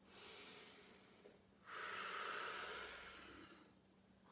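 A woman breathing through her mouth while holding an abdominal Pilates exercise: a short, faint breath, then a louder breath out lasting about two seconds.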